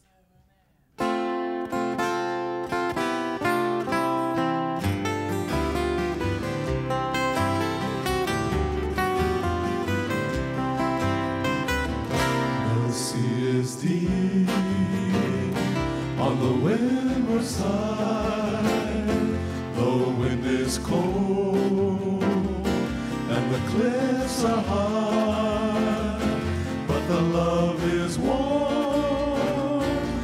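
An acoustic Hawaiian string band starts a song about a second in: strummed guitars and ukulele over a plucked upright bass. Voices singing in harmony join partway through.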